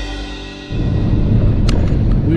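Background music with drums that cuts off under a second in, giving way to the steady drone of a semi truck's engine and road noise heard inside the cab, with a short click near the end.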